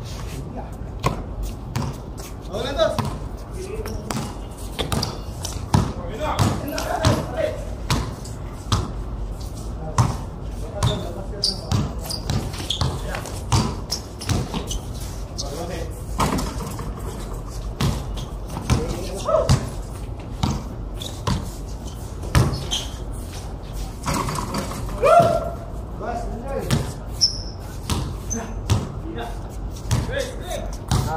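A basketball bouncing on a concrete court in irregular dribbles and thuds during play, with players' voices calling out now and then.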